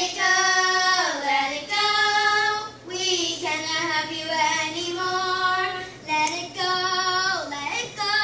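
A child singing unaccompanied, holding long notes with slides between them. The voice breaks off briefly about three seconds in and again about six seconds in.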